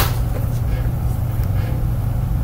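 A steady low machine hum, with one sharp click at the very start.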